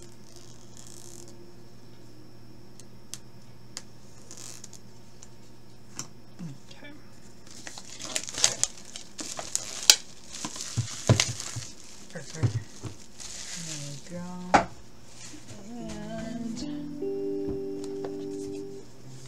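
Cardboard packaging being handled and opened: rustling, scraping and clicks, thickest from about halfway through, with a sharp click a few seconds before the end, over soft background music.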